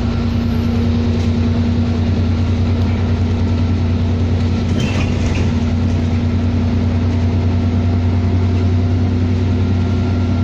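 Alexander Dennis Enviro400 double-decker bus running under way, heard inside the lower-deck cabin: a steady low engine and drivetrain drone with a constant hum, and a brief click about halfway through.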